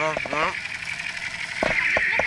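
People's voices talking over a steady hiss of street noise, with two short knocks near the end.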